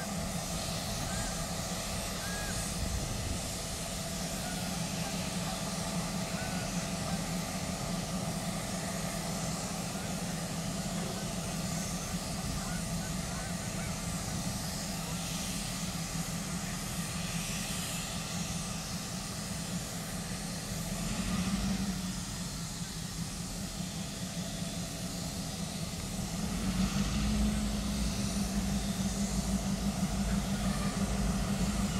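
Diesel freight locomotives idling with a steady drone. Their engine note swells about two-thirds of the way through and rises again near the end as they throttle up.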